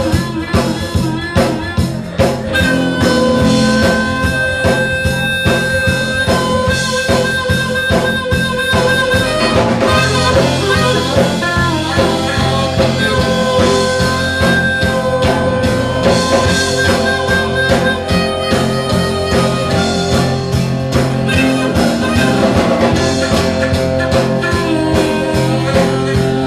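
Live acoustic blues-folk band playing an instrumental passage: harmonica played cupped into a microphone carries long held notes over a steady drum beat, bass and guitar.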